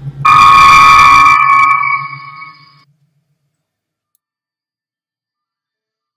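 Star Trek original-series transporter beam sound effect: a bright chord of steady tones that starts suddenly, holds for about two seconds and fades out by about three seconds in.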